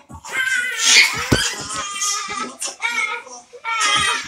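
Children's high-pitched squealing and laughter in short bursts, with a thump a little over a second in.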